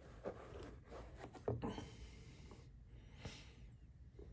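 Faint handling noise as a night vision monocular is lifted out of the foam lining of a hard plastic case: soft rubbing with a few light knocks, the clearest about a second and a half in.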